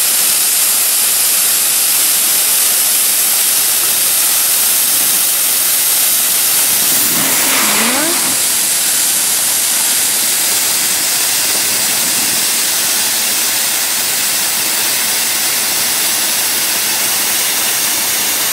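A steady, loud hiss, with a short call whose pitch rises and falls about seven seconds in.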